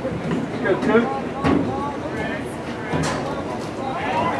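Indistinct voices of players and spectators calling out during a lacrosse game, with two sharp knocks about a second and a half and three seconds in.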